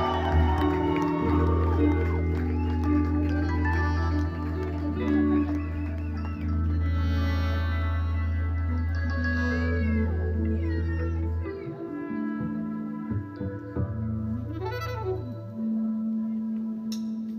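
Live band music, amplified: slow sustained bass notes and held chords with gliding tones over them. The deep bass drops out about three-quarters of the way through, leaving higher held notes.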